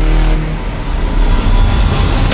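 Race car engine sound mixed with trailer music, with heavy low bass; it drops off about half a second in and builds back up toward the end.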